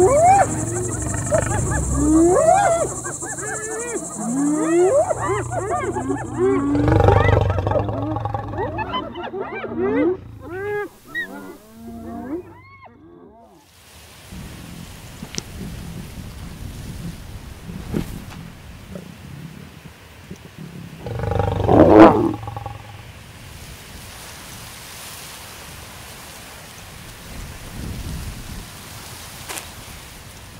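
Lions snarling and growling over a kill amid many short rising and falling whooping calls of spotted hyenas, with a steady high insect chirr in the first several seconds. After a quieter lull, one loud lion growl comes about two-thirds of the way through.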